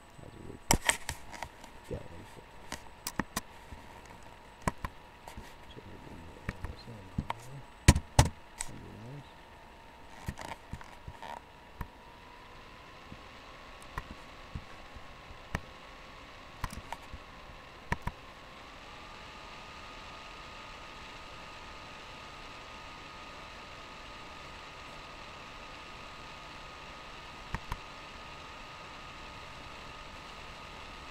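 Irregular clicks and knocks, the loudest cluster about eight seconds in, stopping after about eighteen seconds. Under them runs a faint steady hum that steps up in pitch twice and then holds.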